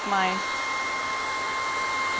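Handheld hair dryer running steadily on heat, a constant high whine over the rush of air, drying a freshly milk-paint-stained wooden board.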